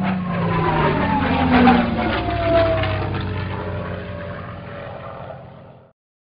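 A propeller airplane flying past, its engine pitch falling steadily as it goes by, then fading out near the end.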